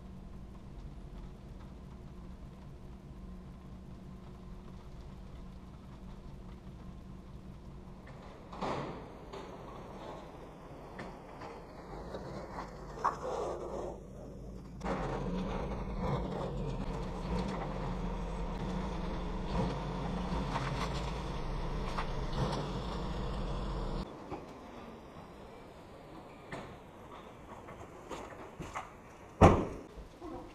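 Pickup truck engine and road hum heard from inside the cab while towing, then, after a cut, the truck's engine running steadily and shutting off about two-thirds of the way through. A few small clicks follow, then one loud thump like a vehicle door shutting near the end.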